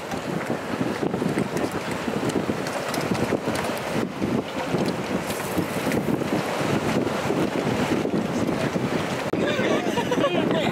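Wind buffeting the microphone in a steady, gusty rush.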